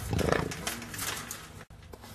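A jaguar vocalising in short, rough bursts at close range, with a break near the end.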